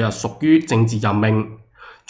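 A man speaking, with a short pause and an intake of breath near the end.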